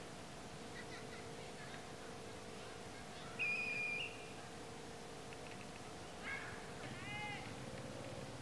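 A single short, steady whistle blast lasting well under a second, about three and a half seconds in, as from a coach's whistle at football practice. Faint arching high calls follow near the end, over a faint steady hum.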